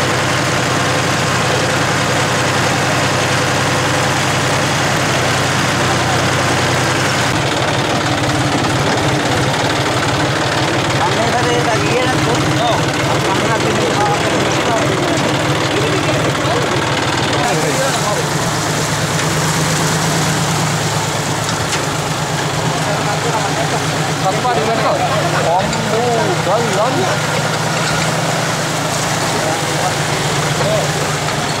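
Safari jeep engine running steadily as the open vehicle drives along a rough track. Its note changes twice, about seven and seventeen seconds in.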